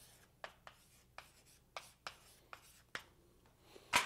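Faint ticks and scratches of someone writing on a board, short strokes roughly every half second, with one louder knock near the end.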